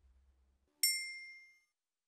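A single bright ding, like a small bell or chime struck once, a little under a second in. Its few high ringing tones fade out within about half a second.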